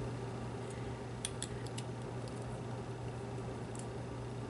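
A few faint, small clicks and taps of plastic pen parts being handled as an ink cartridge is pushed into a calligraphy pen's grip section, over a steady low hum.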